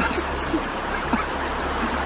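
Shallow rocky stream running over stones: a steady, even rush of water.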